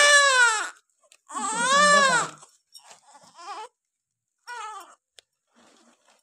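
Newborn baby crying: two loud, long wailing cries in the first two and a half seconds, the second rising then falling in pitch, followed by fainter whimpers and one shorter cry about four and a half seconds in.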